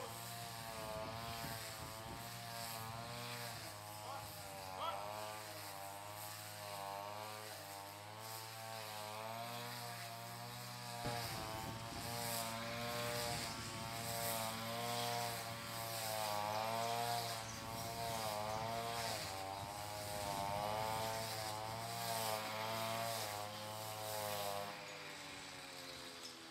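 Handheld string trimmer engine running, its pitch rising and falling as it is swept through the grass, then winding down near the end.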